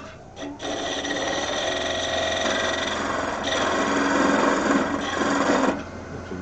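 Hollowing tool cutting inside the end-grain cup of a wooden goblet spinning on a wood lathe: a steady, loud scraping that starts about half a second in and stops abruptly shortly before the end, over the lathe motor's low hum.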